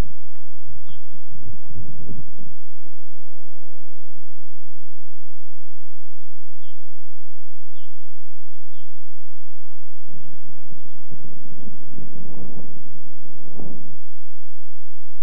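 A bird chirping now and then with short, high calls, over outdoor background noise. Low rumbling noise comes in over the first couple of seconds and again through the last four seconds.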